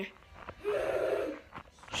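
A person makes a rough, rasping vocal noise lasting about a second, without words.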